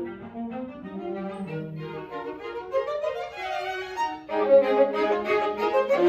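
Live string quartet, two violins, viola and cello, playing a bowed passage: soft for the first few seconds, then swelling noticeably louder about four seconds in.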